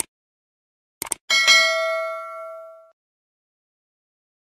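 Subscribe-button sound effect: a mouse click, then a quick double click about a second in, followed by a bright notification-bell ding that rings for about a second and a half and fades out.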